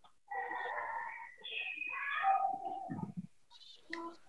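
A faint, drawn-out animal call in the background, lasting about three seconds in several held parts and dropping in pitch near the end.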